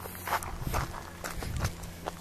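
Footsteps on sandy, gravelly ground: several steps in quick succession, the heaviest landing about two thirds of a second and a second and a half in, over a faint steady low hum.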